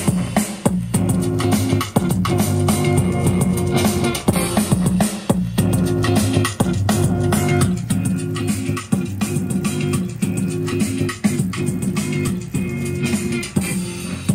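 A boom bap hip-hop beat playing back from an Akai MPC Live II sampler: hard drums over a looped, bass-heavy sample, about 103 beats a minute, the pattern repeating every bar.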